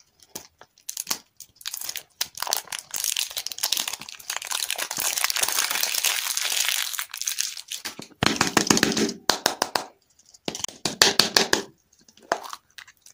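Thin plastic film wrapper crinkling as it is peeled off a round plastic lollipop capsule, a long stretch of dense crinkling. Then two short bursts of rapid clicking and creaking as the hard plastic capsule is gripped and twisted.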